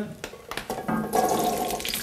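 Small raw potato balls poured from a bowl into a cast-iron frying pan with oil, a wet rushing sound as they tumble in, starting about half a second in.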